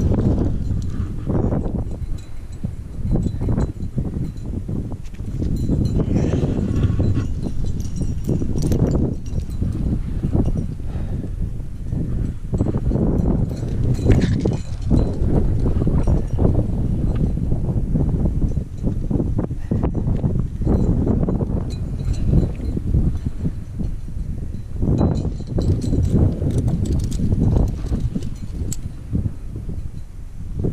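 Metal climbing hardware (carabiners and cams racked on a harness) clinking and jangling irregularly with the climber's moves, over a continuous low rumble on the microphone.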